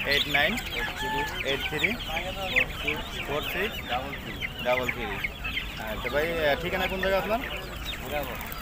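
Chickens clucking and many caged birds calling at once, a dense overlapping din of short calls with no pause.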